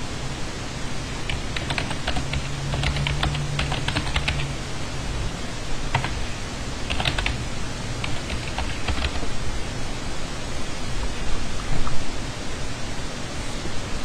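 Typing on a computer keyboard: two runs of quick key clicks, the first about a second in and the second midway, over a steady background hiss.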